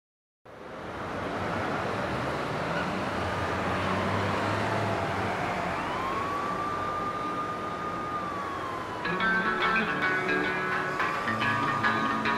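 An emergency-vehicle siren wailing in slow rising and falling sweeps over a steady rushing street-noise hiss. About nine seconds in, guitar music comes in over it.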